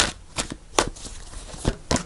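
A deck of tarot cards being shuffled in the hands: a few sharp card snaps at irregular intervals over soft rustling.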